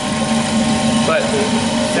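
Steady low hum of brewhouse machinery, holding one low tone throughout.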